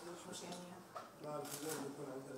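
A voice speaking, with a few short, sharp, high-pitched clicks over it about halfway through.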